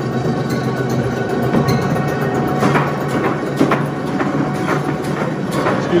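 Urschel DiversaCut 2110 industrial vegetable dicer running with a steady hum, with a few short knocks about halfway through and again near the end.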